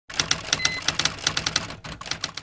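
Typewriter keys clacking rapidly, about seven strokes a second, with a short bell-like ding just over half a second in.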